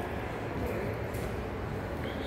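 Steady background noise of an indoor shopping-mall concourse, mostly a low rumble, with a faint tick about a second in.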